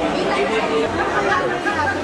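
Diners' chatter: many voices talking over one another at a steady level, with no single voice standing out.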